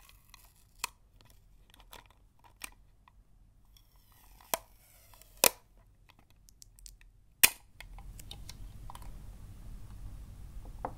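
Fingers and nails handling a clear plastic sticky-tape dispenser: a few sharp plastic clicks and taps spaced a second or two apart, the loudest a little past the middle. Low steady background noise comes back near the end.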